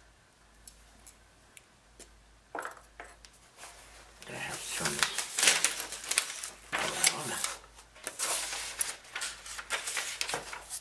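Sketch pad pages rustling and flapping as they are handled, with light scrapes and clinks of metal armature wire against the paper. A few small clicks come first, then a dense stretch of rustling from about four seconds in to near the end.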